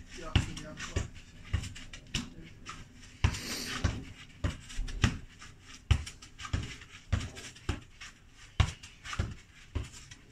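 Football passed back and forth with the inside of the foot: a regular run of short thuds as the ball is received and played back, about one and a half a second.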